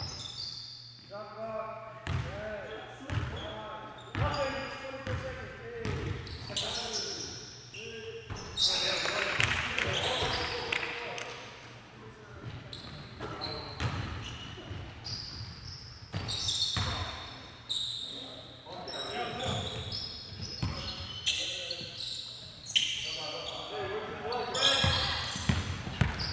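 Basketball dribbled on a hardwood gym floor in short repeated bounces, mixed with players' voices and court noise, echoing in the gymnasium. A louder stretch of noise rises about nine seconds in.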